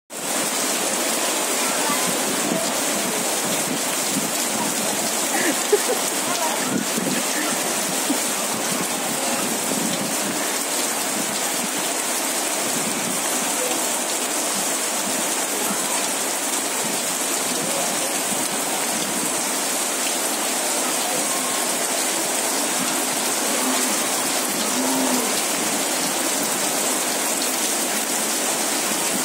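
Heavy rain pouring steadily onto a flooded paved yard, splashing into standing puddles.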